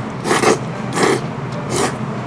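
A person slurping ramen noodles: three quick, sharp slurps, about two thirds of a second apart.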